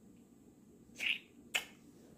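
Two short, sharp lip smacks of kissing, about a second in and again half a second later.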